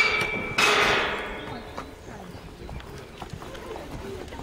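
Pony cantering on a wood-chip arena after clearing a show jump, its hoofbeats faint and muffled, with a brief loud burst of sound about half a second in.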